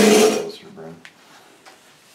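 A man's voice in a short loud burst right at the start, then quiet room tone with a couple of faint clicks.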